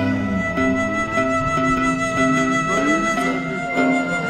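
Background music: a melody of held and gliding notes over steady sustained tones.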